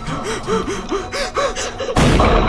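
A cartoon character's voice making a quick run of short, gasping breaths, each rising and falling in pitch, about four a second.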